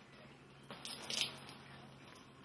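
A wet sock squelching in a glass of water as fingers push and work it, in a few short bursts about a second in.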